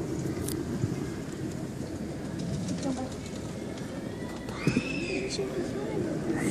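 Steady rumble of a summer toboggan sled travelling up its metal track, mixed with wind on the microphone.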